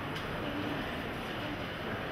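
Steady, even ambient noise of a large gallery hall with a low rumble and hiss, and faint traces of distant visitors' voices.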